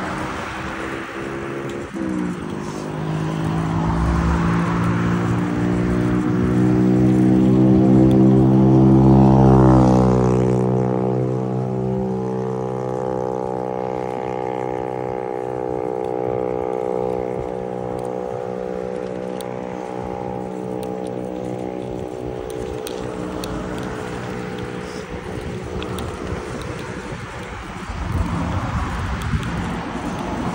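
A motor vehicle passing on the road alongside: its engine note rises in pitch and loudness as it approaches, is loudest about nine seconds in, drops in pitch as it goes by about ten seconds in, then fades away. Wind noise on the microphone is heard at the start and near the end.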